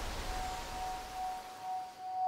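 Quiet trailer sound design: a low rumble and airy hiss slowly fading away under a faint, steady high drone tone.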